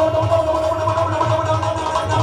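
Live devotional band music over a loud sound system: a held, steady keyboard-like note with a pulsing low beat underneath, no singing.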